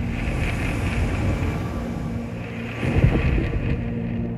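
A rushing, rumbling noise swells over a sustained musical drone and is loudest about three seconds in.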